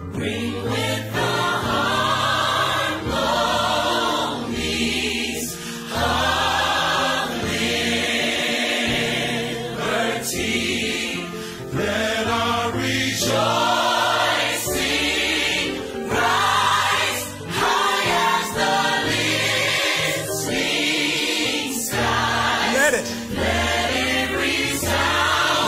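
Gospel music: a choir singing over instrumental backing with a steady beat.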